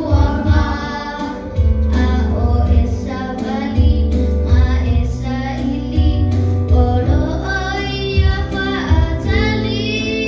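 Children singing into handheld microphones, amplified through a PA, over musical accompaniment with a deep bass line.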